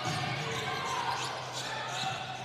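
Basketball game court sound in an indoor arena: a steady crowd murmur with a ball being dribbled on the hardwood floor.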